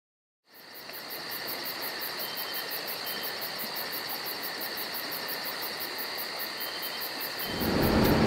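Insect chorus, cricket-like: a steady high drone with a fast, evenly spaced pulsing trill above it, starting about half a second in. Near the end a louder low rumble comes in.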